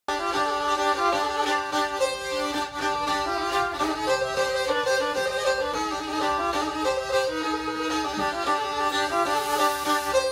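Black Sea (Karadeniz) kemençe, a small bowed folk fiddle, playing a continuous melody of quickly changing notes.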